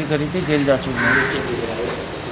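A man's speech in the interview, with a short bird call about a second in.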